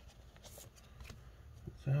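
Faint rustling and light scraping of trading cards being slid out of the pockets of a plastic binder sheet.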